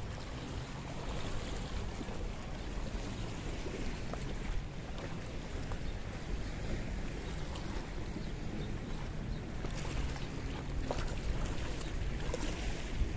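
Sea water lapping and washing against a rocky shoreline in small waves, with wind rumbling on the microphone.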